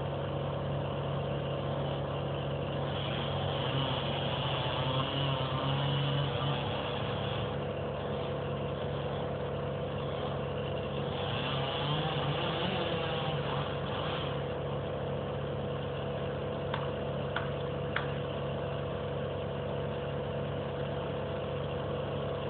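A chainsaw running steadily some way off, working harder in two stretches of a few seconds each, as a faller prepares to fell a fir.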